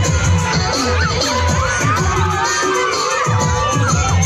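Loud dance music with a steady bass beat, over a crowd of children shouting and cheering.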